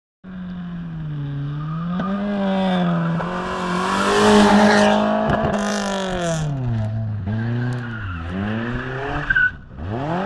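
Suzuki Swift rally car driven hard past at close range, its engine revving up and dropping through gear changes, loudest as it passes. Toward the end the revs dip and climb several times in quick succession as it works through a turn.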